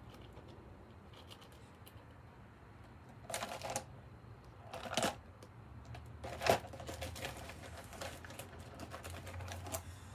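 Glass crystals clicking and rattling as they are handled and set on the canvas. There are three louder clatters, about three, five and six and a half seconds in, followed by a quick run of light ticks.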